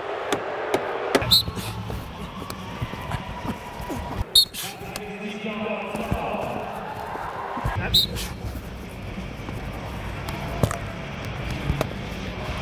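Indoor arena noise of crowd and voices picked up by a player's body-worn mic, with a low rumble and a few sharp knocks about a second, four seconds and eight seconds in.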